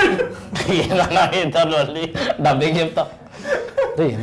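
Men chuckling and laughing, mixed with a few spoken words.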